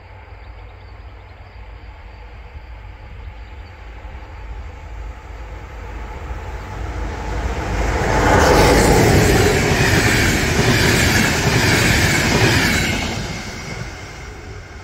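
Electric-locomotive-hauled train approaching and passing close by. The rumble of the locomotive and of wheels on rails grows steadily louder, is loudest from about eight seconds in, then falls away quickly near the end.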